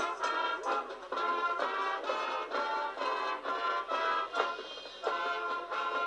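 Marching band playing its competition field show, full chords changing in a steady rhythm about twice a second. The recording is thin, with no low end.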